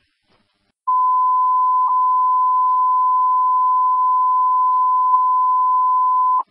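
Fire dispatch radio alert tone: one steady, high pure beep that starts about a second in and holds for more than five seconds, heard over the radio channel. It signals that a new box alarm dispatch is about to be read out.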